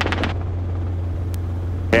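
Robinson R22 helicopter in cruise flight: the steady low drone of its rotor and engine heard inside the cabin, with one brief click partway through.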